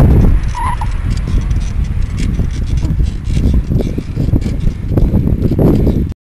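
Wind buffeting the microphone of a camera carried on a moving bicycle, a loud low rumble, with the bicycle clicking and rattling as it rolls over the path. A brief high note sounds about half a second in.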